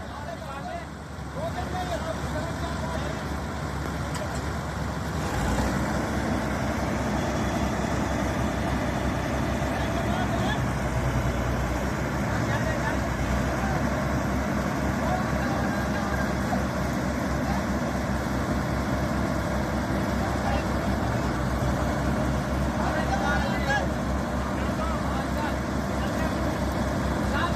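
Preet 987 combine harvester's diesel engine running under heavy load as it strains to drive out of deep mud, getting louder about five seconds in. Faint voices are heard in the background.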